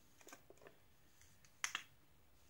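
Faint handling noises, then two quick sharp clicks close together near the end, as a cosmetic brush and a face-mask container are handled.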